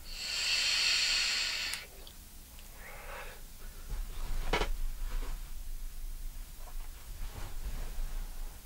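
A long hissing draw on a handheld vape lasting a little under two seconds, followed about a second later by a softer breathy exhale of a large vapour cloud. A sharp click comes about four and a half seconds in, over low rumbling handling noise.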